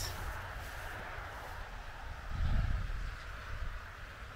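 Outdoor background noise: a steady low rumble under a steady hiss, with a louder low rumble that swells for about a second, about two seconds in.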